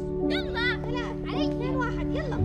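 Children shouting and calling out at play, several short overlapping cries, over background music with steady held notes.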